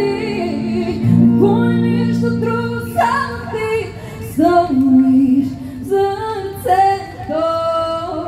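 Live pop song: a woman singing into a handheld microphone over instrumental accompaniment, amplified through stage speakers, her voice moving through short held notes and phrases.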